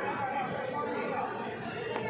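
Indistinct chatter of many people talking at once in a large sports hall.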